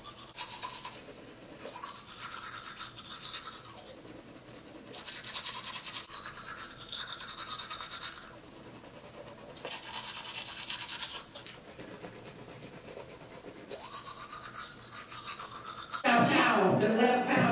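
Manual toothbrush scrubbing teeth in quick back-and-forth strokes, in spells of a few seconds with short pauses between.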